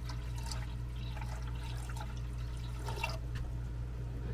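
Water poured from a plastic jug into the resin waterfall's basin, a steady pouring trickle with drips. A constant low hum runs underneath.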